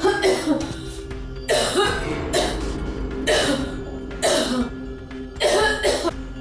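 A woman coughing hard in a series of about six short, loud coughs, roughly one a second, over background music with steady held tones.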